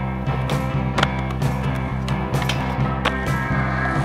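Skateboard on concrete, wheels rolling, with several sharp clacks of the board popping and landing, over background music.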